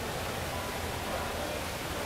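Steady noise of an indoor swimming pool during a breaststroke race, with water splashing from the swimmers.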